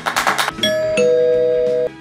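Two-note ding-dong chime sound effect, doorbell-like: a higher note, then a lower one, both held for about a second and stopping just before the end. Under it is background music that opens with a run of quick taps.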